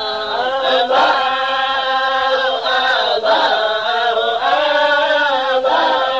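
Vocal chanting in long held notes that slide from one pitch to the next, breaking every second or two, over a steady low tone.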